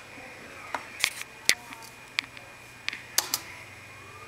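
A few scattered sharp clicks, about seven in four seconds and irregularly spaced, over a faint steady high-pitched electrical whine and low hum.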